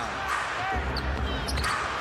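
Basketball game sound in an arena: a ball bouncing on the hardwood court amid steady crowd noise, with a few short high squeaks.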